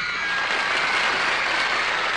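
Studio audience applauding steadily after a song ends.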